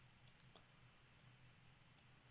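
Near silence: room tone with a low steady hum and a few faint computer mouse clicks in the first second or so.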